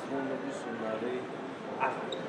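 A man's voice speaking at a conversational level, in short bending phrases.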